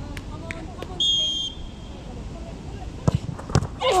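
A referee's whistle blows once, briefly, about a second in. About two seconds later come two sharp thumps half a second apart, the football being struck and then hitting the goal as it goes in, followed near the end by players laughing and shouting.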